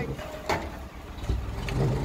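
Engine of a boatyard travel lift running with a steady low rumble as it takes the boat's weight, with a single knock about half a second in.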